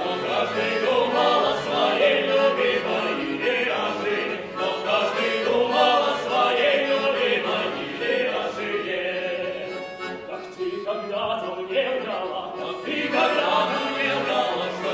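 A male vocal ensemble sings in harmony, accompanied by a bayan (Russian button accordion).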